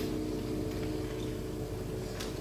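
The last sustained chord of violin and piano dying away, fading out within about the first second into a low, steady room hum.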